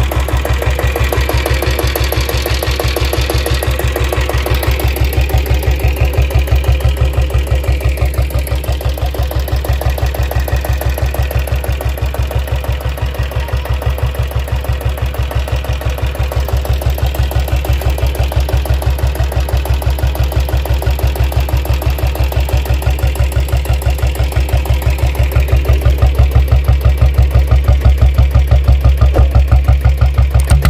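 Royal Enfield Taurus (factory diesel Bullet) single-cylinder diesel engine idling with a steady, rapid knock, getting louder over the last few seconds.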